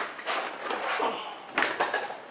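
Small metal tools clinking and rattling as they are handled, with several sharp clicks, the loudest cluster about one and a half seconds in: a screwdriver bit being picked out of a bit set.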